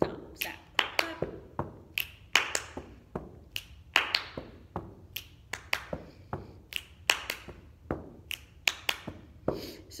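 Body percussion: finger snaps, hand claps and foot stomps repeated in the pattern snap, clap, clap, stomp, stomp at a steady quick pace, about two to three strikes a second.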